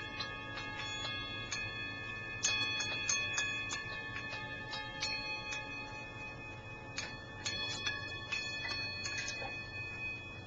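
Small metal bells or cymbals struck over and over at an uneven pace, several strikes a second, with several high tones ringing on and overlapping between the strikes. The strikes thin out near the end.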